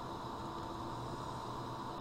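Steady background hiss with a few faint steady tones: room tone and recording noise, with no distinct sound event.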